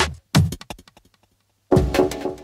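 Electronic logo-sting jingle: a deep synthetic hit about a third of a second in, trailed by quick fading echo ticks, a moment of near quiet, then another heavy hit near the end that opens the synth music.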